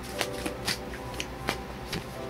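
Tarot cards being shuffled and handled by hand: several sharp card snaps, the loudest about one and a half seconds in.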